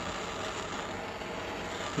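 Propane torch burning with a steady, even hiss of the flame while it heats a stainless-steel colander for soldering.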